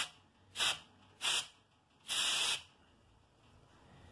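Pressurised CO2 hissing out of a Cornelius (corny) keg post as its new poppet valve is pressed open with a stick: four short hisses, the last one the longest. The valve opens cleanly when pressed.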